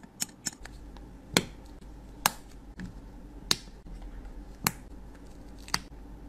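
A metal spatula clicking against a clear plastic makeup case and powder cup as loose face powder is transferred: a series of sharp clicks, about one a second, the loudest a little over a second in.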